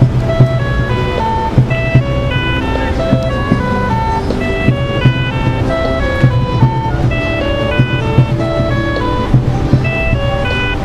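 A traffic signal playing an electronic chime melody: a continuous jingle-like tune of quick, clear notes over a low pulsing bass.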